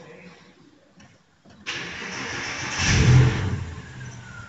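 A 2006 Porsche Boxster's flat-six engine is cranked by the starter and catches about two seconds in. It flares up in revs about three seconds in, then settles toward a steady idle, showing that power is back through the battery cutoff switch.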